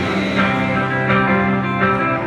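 Rock band playing live in an arena, guitar chords ringing out steadily, heard from among the audience.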